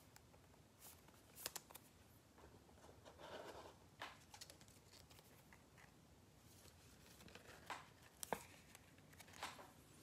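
Near silence with faint, scattered clicks and a soft rustle a few seconds in: trading cards and their packaging being handled.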